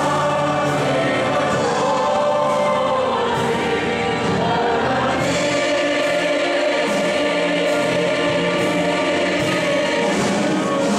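Congregation and worship leaders singing a hymn together, full and steady, over a regular beat.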